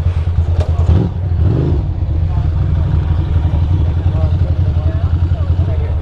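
2006 Ducati Monster 620's air-cooled two-valve L-twin idling steadily with a rapid, even pulse. Faint voices of people close by sit over it.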